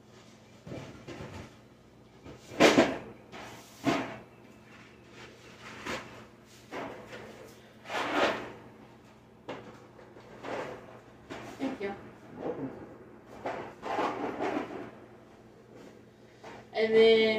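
Cardboard boxes of dry pasta being handled and set onto shelves, with irregular knocks, thuds and scuffs, the loudest a few seconds in and again about eight seconds in.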